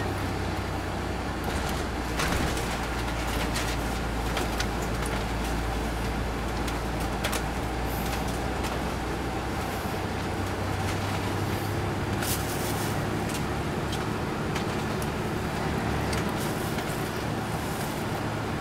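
Cabin sound inside a 2002 MCI D4000 coach under way: its Detroit Diesel Series 60 diesel gives a steady low hum, with road noise and frequent short clicks and rattles from the interior.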